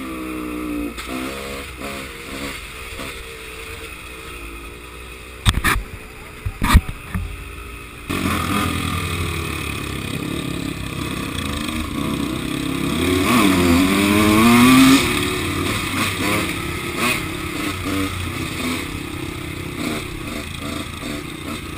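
Dirt bike engine running at speed, its pitch rising and falling with the throttle, heard from on the bike. A couple of sharp knocks come about five and a half and seven seconds in, and the engine gets louder about eight seconds in, climbing in revs to its loudest near fifteen seconds before easing off.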